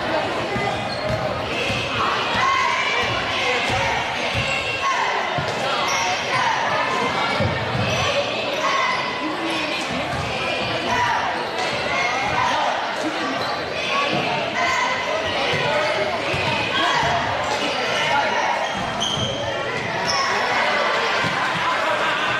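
A basketball bouncing on a hardwood gym floor during play, under a steady chatter of many voices from spectators and players in a large gym.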